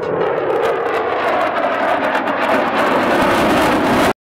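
Eurofighter Typhoon jets flying past, their engines making a steady roar that grows brighter toward the end and then cuts off suddenly.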